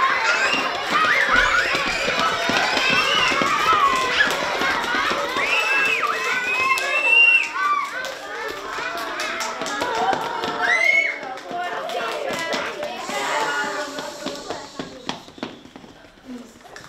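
Many young children's voices at once, chattering and calling out over one another. Near the end the voices thin out and a run of light taps and clicks is heard.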